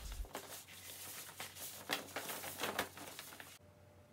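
Faint crinkling and rustling of thin vinyl plastic sheeting as it is handled and turned inside out, in short irregular crackles that stop about three and a half seconds in.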